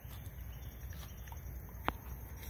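Footsteps scuffing through dry fallen leaves, a few faint scattered crunches with one sharper click near the end, over a low steady rumble of wind or handling on the phone microphone.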